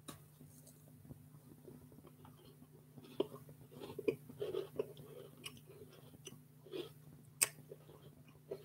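A person chewing and biting a snack close to the microphone: irregular soft crunches and mouth clicks, mostly from about three seconds in, with one sharper click near the end, over a faint steady hum.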